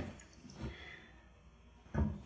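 Faint handling noise of a plastic hydroponic bucket being gripped and lifted, with a soft bump about half a second in and a short sharp knock at the end.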